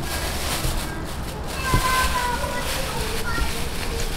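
Thin plastic bag crinkling and rustling as it is stretched over a bowl of batter, with irregular crackles throughout.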